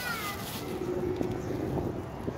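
Asian pied starling calling: wavering, gliding whistled notes in the first half-second, followed by a faint steady low drone.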